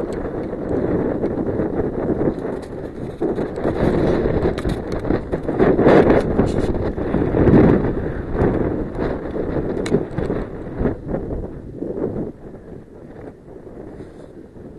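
Wind buffeting the microphone of a camera carried aloft on a small remote-controlled aircraft: a loud, gusting rumble that eases off about twelve seconds in.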